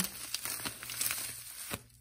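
Thin clear plastic bag of freeze-dried pumpkin powder crinkling as hands squeeze the air out and twist the top closed, in a run of small crackles that tails off near the end.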